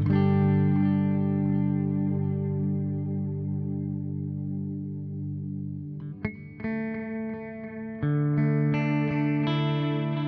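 Fender Telecaster (Mexican-made, stock pickups) electric guitar played through a Source Audio Collider pedal on its tape delay setting. A chord is struck and rings out with echoing repeats, fading over about six seconds. Then new notes are picked and another chord is struck about eight seconds in.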